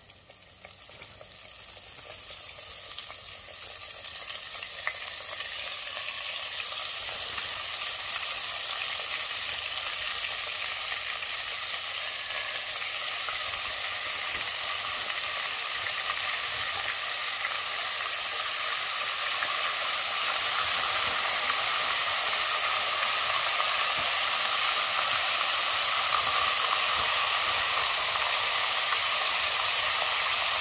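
Hot grease sizzling and bubbling in a cast-iron pot on a gas burner. It builds over the first several seconds, then holds steady and grows slowly louder as the oil heats.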